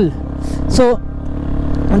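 A steady low hum, like a motor running at idle, under a man saying one short word.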